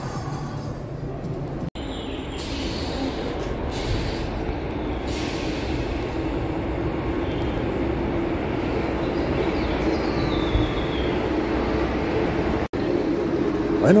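Large diesel coach engine running close by, a steady low drone that slowly grows louder as the bus pulls up to the bay. A faint high falling whine comes about ten seconds in.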